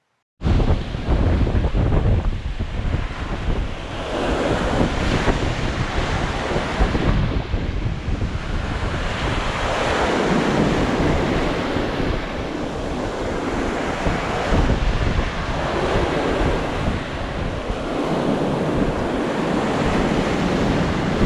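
Lake waves breaking and washing up a sand beach in surges every two to three seconds, with wind buffeting the microphone.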